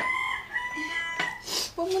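A rooster crowing: one long held call that ends a little over a second in.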